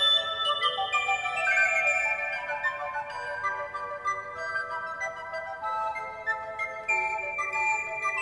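Several recorders playing together in a piece of interweaving parts: clear, pure sustained notes at different pitches that move in steps and overlap.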